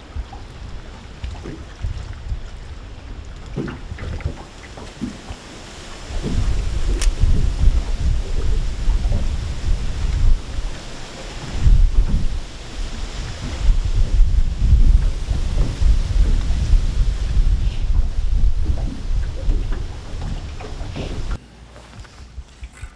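Wind buffeting the microphone in low, uneven gusts. Much stronger from about six seconds in, cutting off abruptly near the end.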